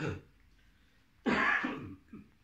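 A man coughing: a short cough at the start, then a louder, longer one about a second and a quarter in.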